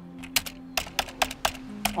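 Computer-keyboard typing sound effect: an irregular run of about ten sharp key clicks, over a faint, steady low musical tone.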